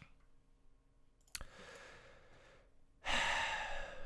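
A person breathing close to a microphone: a click, a soft breath, then a louder sigh about three seconds in.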